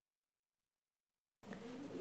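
Dead silence on the call audio, then about one and a half seconds in a participant's microphone opens with a sudden steady background hiss and hum.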